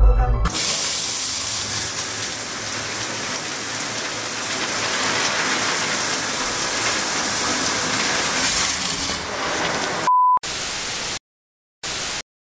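A shower running, a steady spray of water onto tiled walls, following a brief moment of music. Near the end, a short steady beep, then two short bursts of static.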